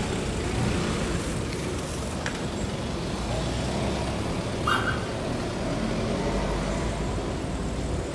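Steady street traffic noise, an even roar of passing road vehicles, with a brief higher-pitched tone about five seconds in.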